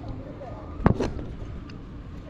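Two sharp knocks close together about a second in, a hard object striking the tabletop close to the microphone, over a low steady background.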